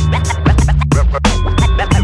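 Hip hop drum beat with a bass line and turntable scratches, just after the track starts.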